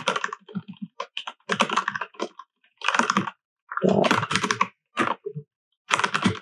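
Typing on a computer keyboard in short bursts of rapid keystrokes, with brief pauses between the bursts.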